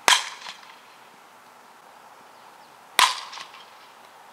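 Fastpitch softball bat hitting a pitched softball twice, about three seconds apart, each a sharp crack. Each is followed about half a second later by a fainter knock.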